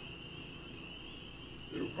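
Faint, steady, high-pitched chorus of night-calling animals in a pause between words, with a man's voice starting again near the end.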